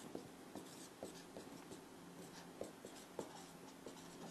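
Whiteboard marker writing capital letters on a whiteboard: a faint run of short strokes and taps of the tip.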